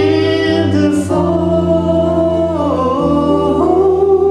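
Live folk song: voices singing long held notes over strummed acoustic guitars and an electric bass guitar.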